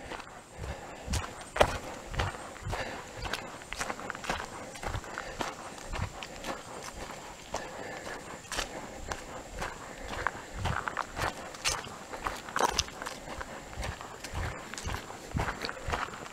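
Footsteps of a hiker walking at a steady pace on a dirt trail, about two steps a second, with small crackles underfoot.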